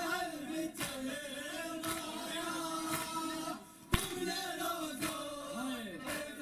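Men chanting a noha (Shia lament) together, with rhythmic matam: hands striking chests about once a second. One strike a little past the middle is sharper and louder than the rest.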